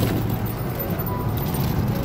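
Steady low drone of a car's engine and tyres heard from inside the cabin while cruising on a highway, with music playing over it.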